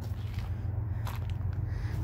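A few soft footsteps on loose garden soil over a steady low background rumble.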